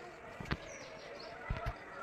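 Dull thumps from a hand working wet cement on a concrete slab: one about half a second in and two close together near the end. Birds chirp briefly in the background.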